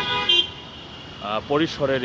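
Busy road traffic with a short vehicle horn toot near the start, and people's voices talking over the low rumble of engines.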